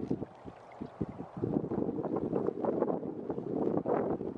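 Wind buffeting the microphone in gusts, a low rumbling flutter that grows louder about a second and a half in.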